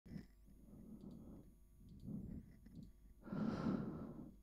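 Faint handling sounds from a desk microphone: soft low rustles and a few small clicks, with a louder breathy rustle near the end.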